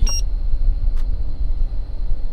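A single short high-pitched beep from a Ryobi infrared temperature gun taking a reading, then a loud, uneven low rumble of air from the dashboard vent buffeting the microphone, with a faint click about a second in.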